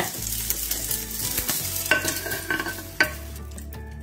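Egg omelette sizzling in hot oil in a frying pan. The sizzle drops away about three seconds in, at a single knock as the pan is tipped over onto the plate.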